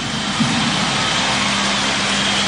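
Ballpark crowd cheering after a run scores, a steady roar of many voices.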